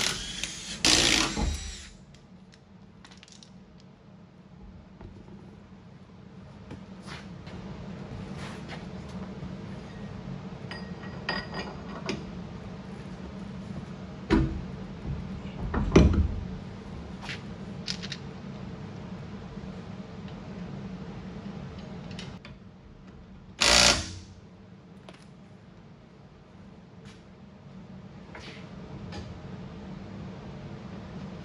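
Cordless impact wrench run in short bursts on the lug nuts as a car wheel is fitted, a loud burst at the start and another short one well past the middle, with knocks of the wheel and nuts being handled between them. A steady low hum runs underneath.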